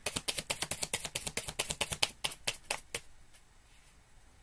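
A deck of tarot cards being shuffled by hand: a quick run of crisp card clicks, about eight a second, that stops about three seconds in.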